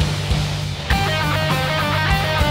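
Instrumental passage of a dark metal song: full band with drums and bass. About a second in, a lead electric guitar comes in with a riff of short notes repeating in a steady pattern.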